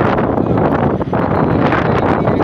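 Wind buffeting a phone's microphone: loud, steady noise with a brief dip about a second in.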